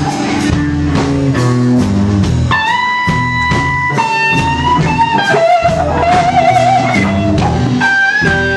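Live blues band playing an instrumental passage: an electric guitar solo of held, bent notes with vibrato over electric bass and a drum kit.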